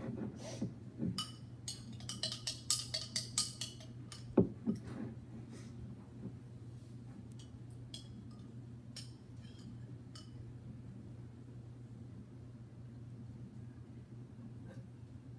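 A metal spoon clinking and scraping against a drinking glass: a quick run of clicks for a few seconds, one louder knock, then scattered lighter clinks. A low steady hum runs underneath.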